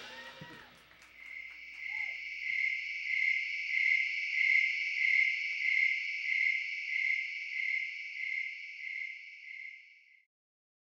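Night insects trilling: a steady high-pitched trill that swells and fades about once a second, then cuts off at the end.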